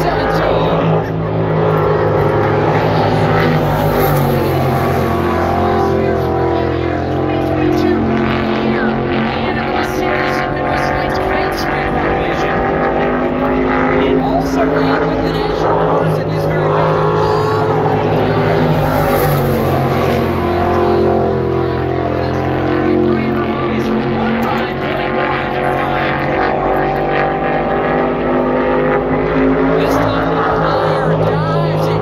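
Winged sprint car engine running hard on a timed qualifying lap of an oval, its pitch rising and falling through the corners. It comes past louder twice, about fifteen seconds apart, once per lap.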